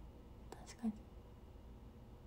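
A woman's faint breath and one short, soft voice sound, like a murmured "mm", just before a second in, over quiet room tone.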